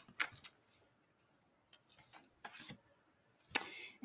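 Faint rustling and light taps of cardstock and patterned paper being handled on a desk, in a few short bursts near the start, in the middle and near the end.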